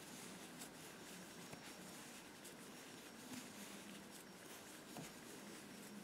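Near silence over room tone, with faint soft ticks and rustles of yarn being worked with a Tunisian crochet hook on the return pass, the loops worked off two at a time.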